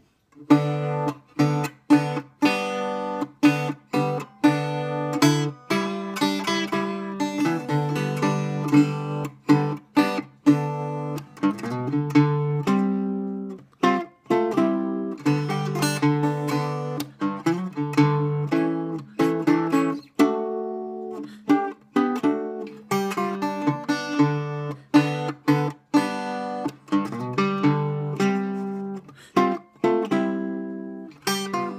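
Harmony Stella H6130 acoustic guitar tuned to open G, played with a mix of picked notes and strummed chords in a steady rhythm, with the open strings ringing between attacks.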